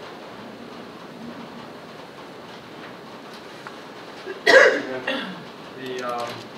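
Quiet meeting-room tone, then about four and a half seconds in a person makes two short, sharp vocal sounds close together, the first loud.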